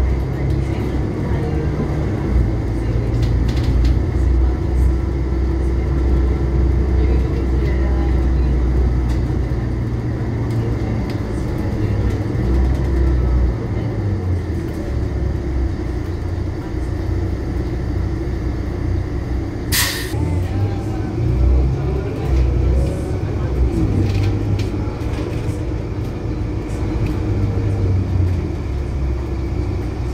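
Inside a Volvo B12BLE city bus: the diesel engine and drivetrain running, their low rumble rising and falling as the bus slows and moves off, over a steady air-conditioning drone. A short, sharp air hiss about two-thirds of the way through.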